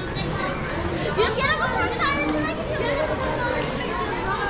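A group of children chattering and calling out, their high voices overlapping, over the babble of a crowd.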